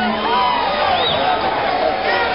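Concert crowd cheering and calling out, many voices shouting and whooping over one another.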